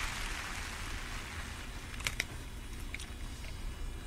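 Low background hiss of an open broadcast microphone, with a few faint clicks in the second half.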